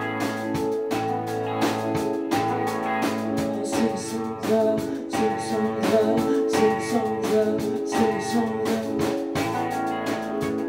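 Live rock band playing an instrumental passage: electric guitars and keyboard over a drum kit keeping a steady beat of about two strokes a second.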